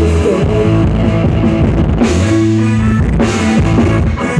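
Rock band playing live and amplified: distorted electric guitars over a drum kit.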